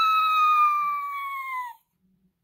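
A woman's high-pitched "woo" cry, held on one note and sagging slowly in pitch. It stops abruptly shortly before the end.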